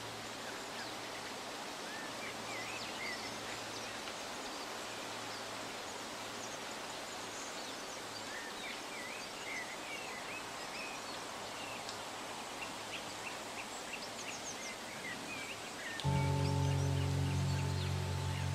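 Quiet woodland ambience: a steady hiss with scattered short, high chirps of small birds. Music with steady held notes comes in about two seconds before the end.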